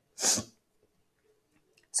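A single short, sharp breathy sound from the lecturing woman, about a quarter second long, just after her sentence ends. Then a quiet pause until she speaks again at the very end.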